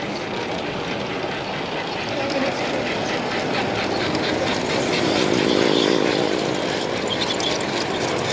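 Large-scale model train running past close by on brass track: the wheels click rapidly and evenly over the rails, with a running hum that swells about halfway through as the locomotive and cars go by. Crowd chatter runs underneath.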